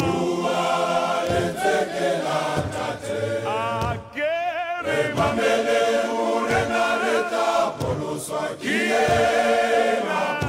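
Men's choir singing together in full harmony. About four seconds in, the group drops away and a single voice sings alone briefly, with vibrato, before the whole choir comes back in.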